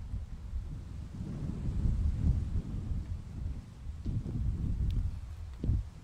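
Wind buffeting an outdoor microphone: an uneven low rumble that rises and falls in gusts.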